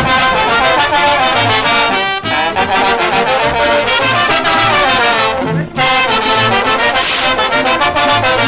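A brass band of saxophones and trumpets playing a lively dance tune, with a pulsing bass line under the melody and a brief break about five and a half seconds in.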